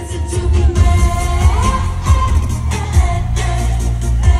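Live pop music through a concert PA: a heavy electronic bass beat under a sung vocal line that holds and slides between notes.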